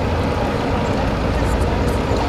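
Steady low rumble and noise in the cabin of a city bus, with no clear rhythm or pitch.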